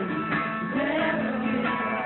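Live pop song with a singer and guitar, recorded from the audience; the sound is dull, with no high end. The surrounding lyrics are Christian and encouraging.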